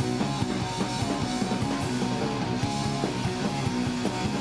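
Live rock band playing an instrumental passage, with electric guitar over bass and drums and chord notes held steadily throughout.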